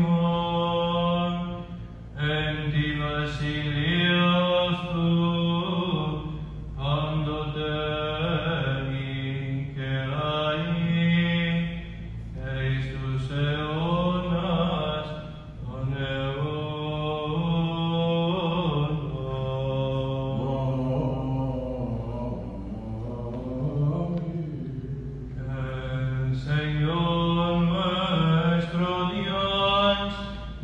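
Byzantine chant sung unaccompanied by a male chanter: long melismatic phrases whose notes glide up and down, broken by short breaths.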